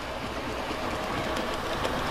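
Graco ToughTek CM20 continuous mixer running steadily: its 120-volt electric drive turns the auger and mixing tube, with a low hum, while wet mortar drops from the discharge into a bucket.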